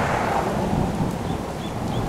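Wind buffeting the camera's microphone: a steady, low rush of noise with no breaks.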